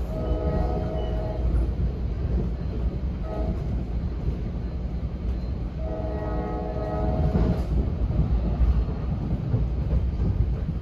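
NJ Transit train running with a steady low rumble, heard from inside a passenger coach, while its horn sounds a long blast, a short blast about three seconds in, and another long blast about six seconds in, the long-short-long close of a grade-crossing signal.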